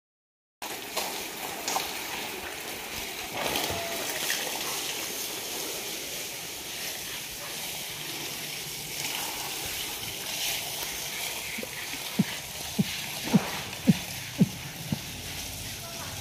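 Water from a hose spraying onto a water buffalo and splashing on the wet concrete floor, a steady hiss. Near the end, six short sharp sounds, each dropping in pitch, come about half a second apart.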